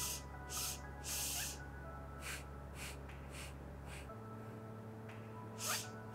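Soft background music with a low, steady drone that shifts to a different chord about four seconds in. Over it come short breathy hisses at a steady pace of about two a second, pausing for a couple of seconds in the middle.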